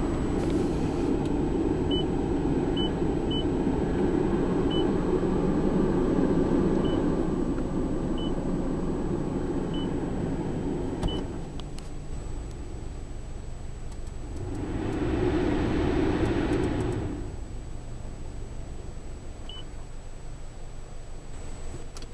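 Car climate-control blower fan pushing air through the dash vents, running high for about eleven seconds, then dropping and swelling again for a couple of seconds later on. Short electronic beeps sound about nine times as the climate-control buttons are pressed.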